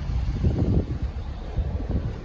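Wind buffeting the microphone: an irregular low rumble that swells and drops several times.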